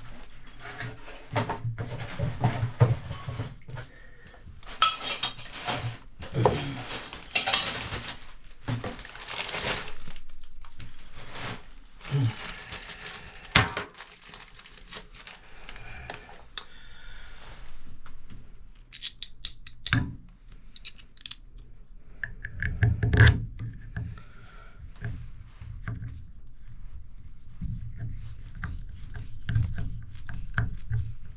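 Clinking and knocking of small metal tools and parts being handled: a string of separate clicks and clatters, with the sharpest knock about 23 seconds in.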